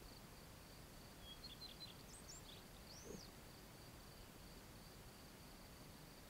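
Near silence, with a faint steady high trill like an insect's and a few faint bird chirps from about one and a half to three seconds in.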